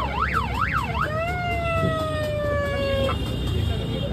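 Electronic siren fitted to a scooter and worked from a handheld microphone controller: a fast up-and-down yelp, about two and a half sweeps a second. About a second in it switches to a steady tone that slides slowly down in pitch, then cuts off suddenly about three seconds in.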